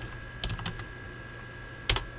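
Computer keyboard typing a command: a quick run of keystrokes about half a second in, then one louder key press near the end.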